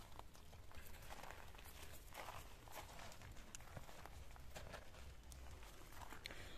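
Faint footsteps with scattered light clicks and rustles as small black plastic plant pots are picked up and handled, just above near silence.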